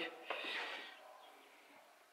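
A man's short breathy exhale, a soft rush of air that fades away within about a second.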